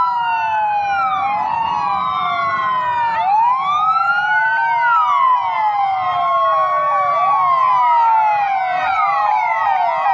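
Several ambulance sirens wailing at once from a convoy of ambulance vans, their rising and falling tones overlapping out of step with each other, over a faint low rumble of the vehicles on the road.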